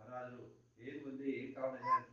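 Speech: a man delivering a religious discourse in Kannada in a raised voice, with a steady low hum underneath.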